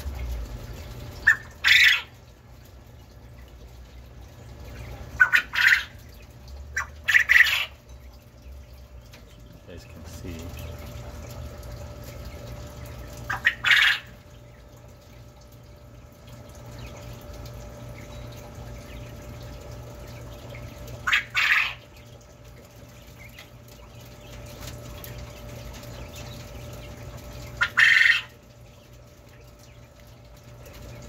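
Caged coturnix quail calling: six loud, short calls spaced several seconds apart, each a quick pair of notes, over a low steady hum.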